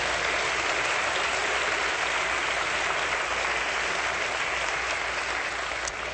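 Congregation applauding, a dense, steady clapping that holds throughout.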